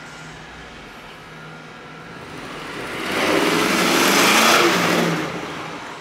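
A car driving past close by: engine and road noise swell loudly a few seconds in, hold for about two seconds, then fade away. A low steady engine hum lies underneath.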